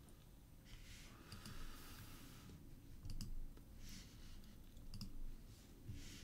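Faint computer mouse clicks: a handful of scattered short clicks with soft rustling between them.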